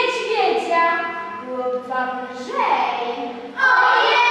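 Children singing, the voices holding notes, growing louder near the end as more voices come in.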